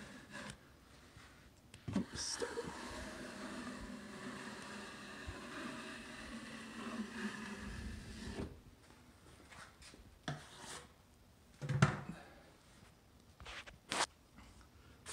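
Steel drywall taping knife pressed hard into an inside corner and drawn down it in one long stroke of about six seconds, scraping wet joint compound smooth: a rough, steady scrape on the final smoothing pass. A brief sharp knock follows a few seconds after the stroke ends.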